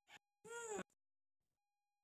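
A cat meowing once: a short call that rises and then falls in pitch.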